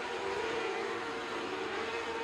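A pack of winged micro sprint cars with 600cc motorcycle engines racing on a dirt oval, engines held at high revs in a steady, siren-like tone that dips slightly in pitch and comes back up.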